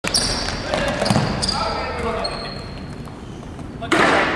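Futsal ball kicks and bounces on a wooden sports-hall floor, echoing in the large hall, with players' voices calling out. A short high shoe squeak comes about halfway through, and the loudest kick thud falls just before the end.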